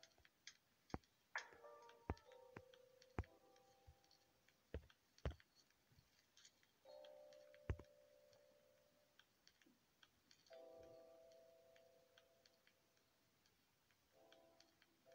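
Faint, scattered clicks of fingers tapping a phone's touchscreen, about a dozen irregular ticks. Between them come faint held tones that fade out, three times.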